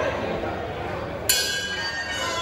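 A ring bell struck once just past halfway, ringing on with several high tones: the bell starting round two.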